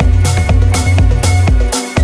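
Electronic house music with a steady four-on-the-floor kick drum and bass at about two beats a second, and off-beat hi-hats between the kicks.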